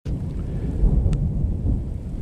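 Wind buffeting the microphone in a low, gusty rumble during a rainstorm, with a few sharp ticks, likely raindrops striking the camera.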